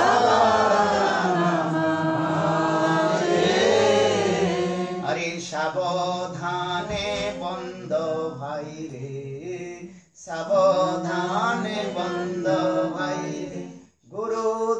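A man's voice chanting a Sanskrit verse in a sing-song melody. He holds long, gliding notes for the first few seconds, then moves to shorter syllables, with a brief pause for breath about two-thirds of the way through.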